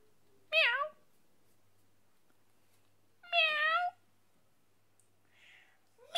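A cat meowing twice: a short meow about half a second in, then a longer meow about three seconds later that dips and then rises in pitch.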